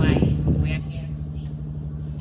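A woman speaking into a microphone through a PA system, her voice loudest in the first second and then trailing off, over a steady low hum.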